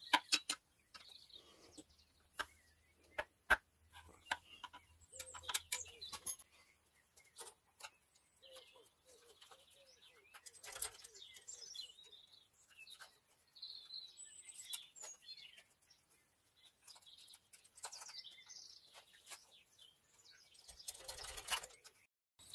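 Light clicks and taps of a screwdriver and plastic fuel return-line connectors being prised and wiggled off a BMW N57 diesel's injectors, busiest in the first six seconds and sparser after. Faint bird chirps can be heard behind.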